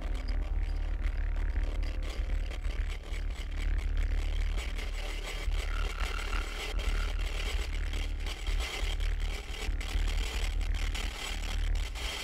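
Low, steady rumble with irregular crackling clicks throughout, a quiet sound-design interlude in the track before the band comes back in.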